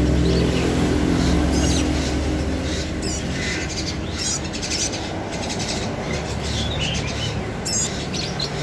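Small songbirds chirping in short, scattered high calls. A low, steady hum underneath fades away over the first couple of seconds.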